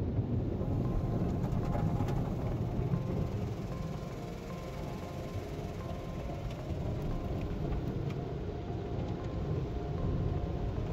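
Automatic car wash heard from inside the car's cabin: a steady, muffled rumble of water spraying and wash equipment working against the car's body.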